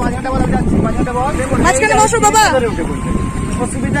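People's voices talking over a steady low background rumble, with a brief held high note near the end.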